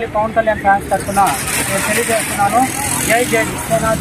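Speech on a busy street, with steady traffic noise behind it.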